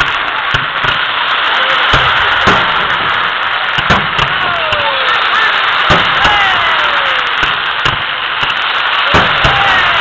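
Fireworks display: irregular bangs from shells launching and bursting, about one a second, with several whistles that fall in pitch, over a continuous noisy hiss.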